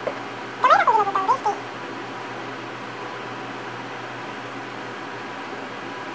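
A single short high-pitched call about a second in, rising sharply and then falling in pitch with a brief second lift, over a steady faint background hum.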